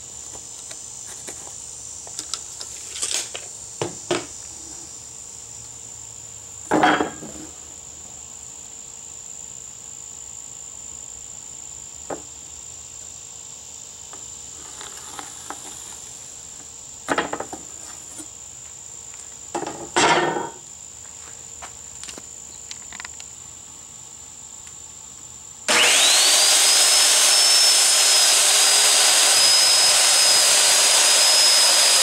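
Crickets chirping steadily, with a few short knocks and taps from hand tools. Near the end a circular saw starts with a rising whine and runs loudly at a steady speed.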